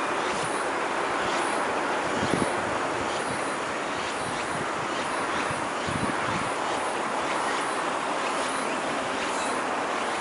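Steady running noise of a Chikuho Electric Railway tram on its track, with a couple of short knocks about two and six seconds in.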